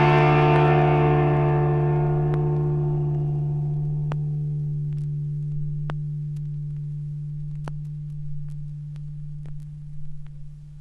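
The final chord of a rock song on distorted electric guitar, ringing on and slowly fading away, with a few faint clicks as it dies down.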